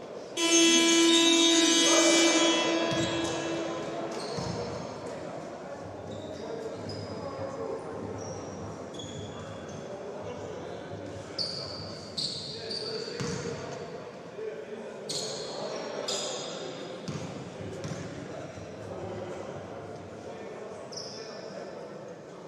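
A basketball arena horn sounds once, loud and steady for about two seconds just after the start, then rings out in the hall. After it come a basketball bouncing on the hardwood floor and short sneaker squeaks.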